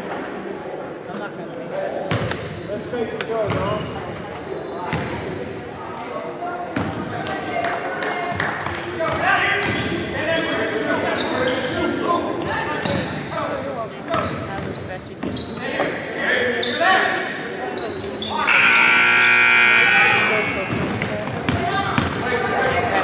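A basketball bouncing on a hardwood gym floor, with indistinct voices echoing in a large gym. About eighteen seconds in, a loud steady tone sounds for about two seconds.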